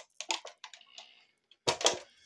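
A series of light, irregular clicks and taps from hands handling the radio-control buggy and the phone filming it, with a louder cluster near the end.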